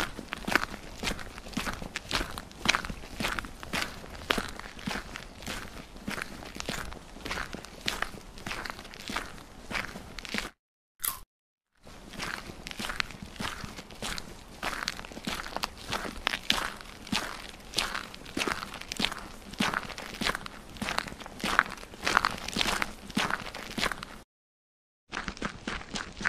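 Footstep sound effects: a steady run of short steps, broken by about a second of silence near the middle.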